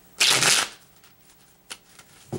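A deck of tarot cards being shuffled by hand: one quick flutter of cards lasting about half a second, then a light tap of cards near the end.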